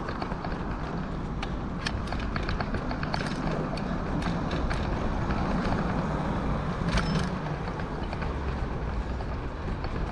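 Rolling noise of a bicycle ridden over asphalt and paving, with a steady low rumble and frequent small rattles and clicks from the bike, and a sharper jolt about seven seconds in.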